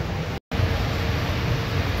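Steady mechanical hum and hiss of background machinery, with a faint steady tone over a low rumble. The sound drops out completely for a split second about half a second in, where the recording was cut.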